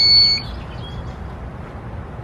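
Ampeak 2000-watt power inverter giving a single steady high-pitched electronic beep as it is switched on, cutting off just under half a second in.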